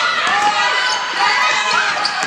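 Basketball game in a gym: a ball dribbled on the hardwood court, with players' and spectators' voices.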